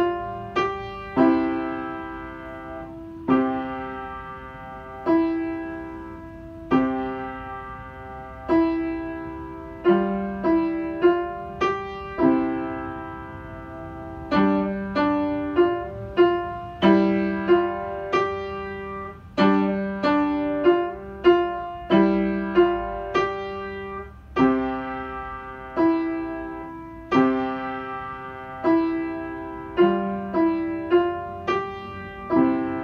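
Upright piano played solo: a slow melody in the middle register, each note or chord struck and left to ring and fade. The notes come more often in the second half.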